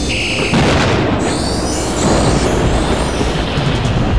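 Documentary sound design over music: a deep, continuous boom-like rumble. A brief high tone sounds in the first half second, then a whooshing sweep of sliding high tones runs from about one to three seconds in.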